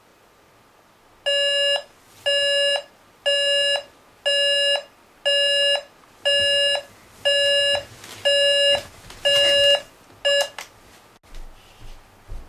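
Digital alarm clock going off: a series of half-second electronic beeps, about one a second, ten in all, the last one cut short. A few soft low thumps follow near the end.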